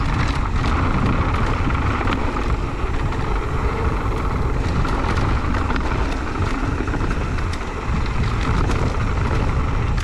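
Wind buffeting the microphone and mountain bike tyres rolling fast over a dirt trail: a steady loud rushing, with scattered small rattles and knocks from the bike over bumps.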